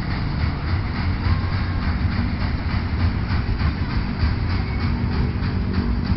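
Steady wind rumble buffeting the microphone, loud and fluttering, with no pauses.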